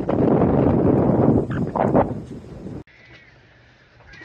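Wind blowing hard across the microphone on the open deck of a sailing catamaran: a loud, rough rush. It cuts off suddenly a little under three seconds in, leaving a faint interior hush.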